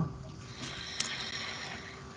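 Faint room noise on a video-call line: a steady hiss with a low hum and a single click about a second in.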